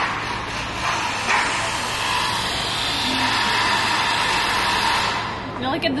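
Loud, steady rushing machine noise from the street, building over a few seconds and dying away near the end.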